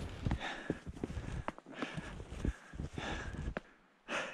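Footsteps crunching through deep fresh snow, about two steps a second, uneven, with small sharp clicks between them.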